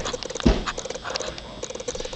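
Handling noise of a handheld camera being moved about: two dull thumps about half a second apart, then light rustling and tapping.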